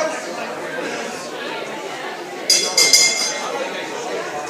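Boxing ring bell rung in a short burst of ringing strikes about two and a half seconds in, signalling the start of the round, over steady crowd chatter in a hall.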